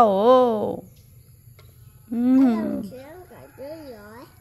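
Speech only: voices talking with a pause of about a second after the start, and a child's high voice near the end.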